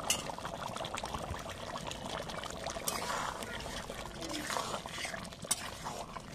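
Beef and pumpkin curry bubbling at a hard boil in an iron karahi: a steady crackle of many small pops and gurgles.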